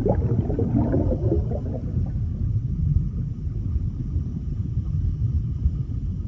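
Underwater sound effect: a deep rumble with bubbling gurgles over the first couple of seconds, settling into a steady low rumble.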